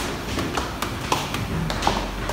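Footsteps of hard-soled shoes on stone stairs: a quick, even run of sharp taps, about three a second.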